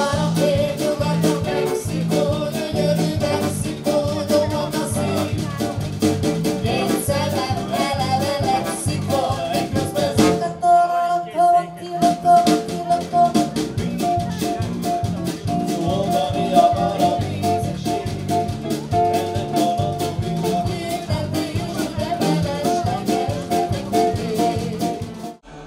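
Small band playing: acoustic guitar, trombone, drum kit and electric bass with a woman singing. About ten seconds in, the bass and drums stop for a moment under a held note, then the full band comes back in.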